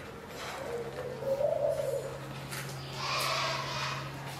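A bird call: one low note that swells and fades over about a second and a half, over a steady low hum.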